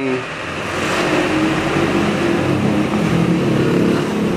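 A motor engine running steadily with a low hum, at about the loudness of the speech around it.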